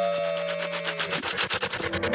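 Dubstep track in a bass-less break: held synth tones fade out over the first second, then a fast stuttering roll of clicks begins and runs on to the end.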